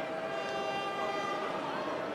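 A steady horn-like tone with several overtones, held for about two seconds and slowly fading, over faint crowd noise.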